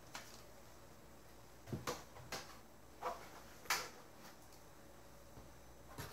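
A few light knocks and clunks, about five over two seconds starting near two seconds in, as metal hardware is handled and set down on a table: a hard drive in its metal carrier and the DVR's open steel case.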